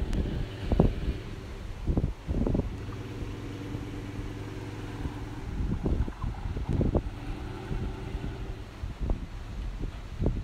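Dodge Ram pickup truck's engine running steadily as the truck pulls forward, with gusts of wind buffeting the microphone.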